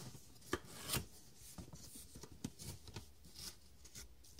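Cardboard box being opened by hand: flaps scraping and rubbing against each other, with two sharper rasps about half a second and a second in, then lighter rustling.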